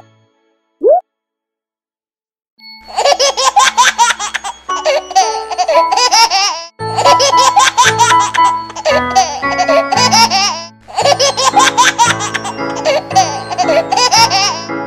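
Cartoon sound effects over children's music: a short rising glide about a second in, a brief silence, then a bouncy backing tune with a recorded baby laughing and giggling over it in repeating bursts.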